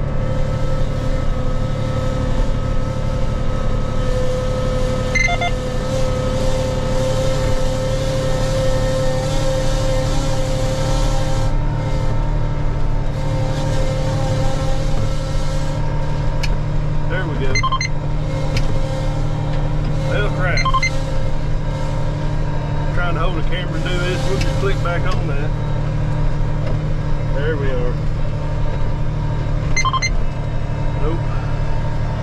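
Case IH tractor engine running steadily under way across a field, heard from inside the cab, with a steady whine over the low drone.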